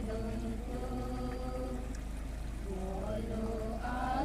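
A group of voices chanting a Donyi Polo prayer song together, drawing out long held notes, with a short rising phrase near the end.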